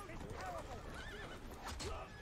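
A horse whinnying amid voices in a TV episode's soundtrack, quieter than the nearby talk.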